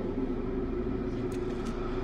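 A steady low rumble with a few faint held tones.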